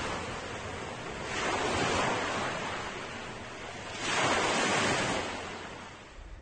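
Sea waves washing in, a hiss that swells and fades twice.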